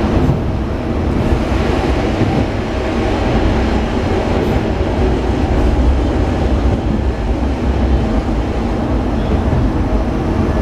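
Diesel railcar running between stations, heard from inside the passenger cabin: steady engine and wheel noise, heaviest in the low end.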